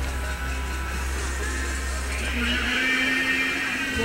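Steady mechanical whir of a large video projector's cooling fan close by, with music playing in the background.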